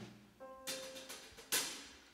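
Two sharp drum-kit strikes about a second apart, each ringing out and fading, with a short held keyboard note just before the first, as the band readies the next song.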